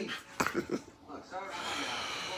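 A dog whimpering briefly with a short high whine in the second half, and a sharp knock about half a second in.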